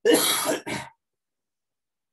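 A man clearing his throat in two harsh bursts, a longer one then a short one, all within the first second.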